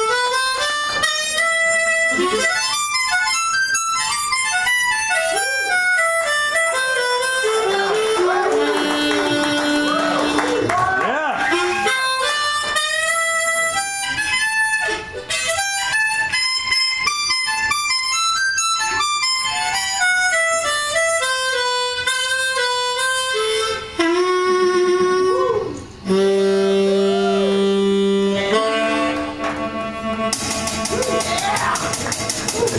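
Blues harmonica played into a vocal microphone: quick runs of single notes stepping up and down, with bent, wavering notes around the middle and again near the end.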